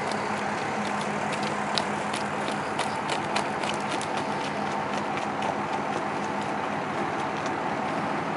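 Hoofbeats of an unshod horse trotting on a gravel driveway: scattered light clicks of hooves on stones, a few a second, over a steady background hiss.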